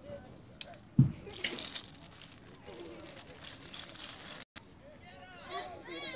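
Faint distant voices of players and spectators at an outdoor football game, with one sharp thump about a second in and a few lighter clicks. The sound cuts out for a split second past the middle.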